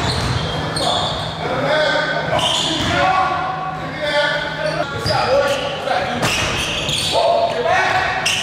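Basketball dribbled on a hardwood gym floor, with voices and short high squeaks over it, echoing in a large hall.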